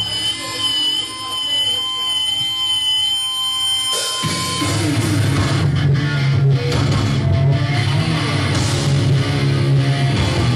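Electric guitar feedback and a held, wavering guitar note ring for about four seconds, then a hardcore punk band comes in at full volume with distorted electric guitars, bass and drums.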